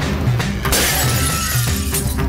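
Dramatic TV-serial background score with a low, pulsing bass bed; about two-thirds of a second in, a sudden bright shattering sound effect hits and fades away over about a second.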